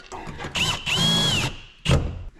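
Milwaukee Fuel cordless drill driving the thermostat's bottom mounting screw: a short burst, then a run of about half a second whose motor whine rises, holds and falls as the screw is driven home. A single thump follows near the end.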